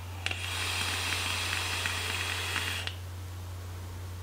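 Tauren rebuildable dripping atomizer firing during a draw: a click, then about two and a half seconds of hissing with small crackles as air is pulled over the hot coil.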